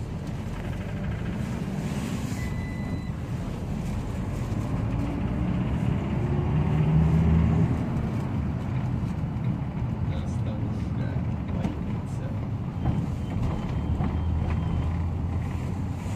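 Iveco Daily minibus heard from inside the passenger cabin while under way: a steady engine and road rumble. The engine note rises and grows louder between about five and eight seconds in as it pulls harder, then settles back.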